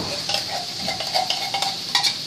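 Vegetables and chicken sizzling steadily in a frying pan, with a few light clicks and scrapes as condensed cream of chicken soup is emptied from a metal can into it.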